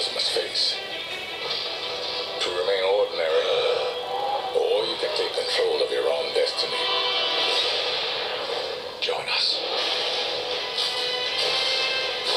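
Film trailer soundtrack playing through a portable DVD player's small built-in speaker: music with voices and sound effects, wavering pitched sounds in the middle and a few sharp hits.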